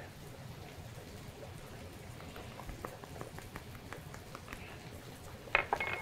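Faint sizzling and crackling of onions and garlic cooking in a pot on the stovetop, with a few sharper clicks and taps near the end.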